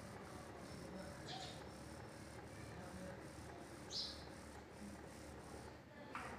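Quiet background noise with two brief high chirps, one about a second in and a stronger one about four seconds in.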